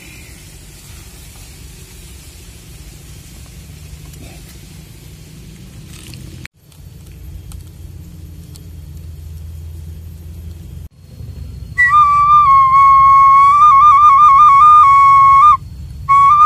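A low steady rumble for the first part, then, about twelve seconds in, an end-blown flute (suling) starts loudly, playing a bright melody of held notes broken by quick trills.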